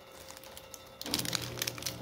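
Crinkling and crackling of a 1989 Topps wax-paper card pack handled in gloved hands, starting about a second in.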